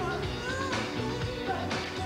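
Live band playing a pop song's instrumental intro: a steady drum beat over a repeating bassline, with sustained notes gliding above it.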